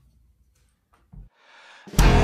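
A quiet pause with a single low thump about a second in and a soft hiss after it; right at the end a drum kit and band come in together on a sharp downbeat, the start of a progressive-rock song.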